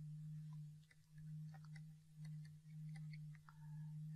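A faint, steady low electrical hum, with scattered light ticks of a pen tapping and sliding on a writing tablet.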